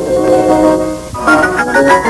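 Piano music: held chords that thin out and dip about a second in, then a quick run of notes climbing in pitch.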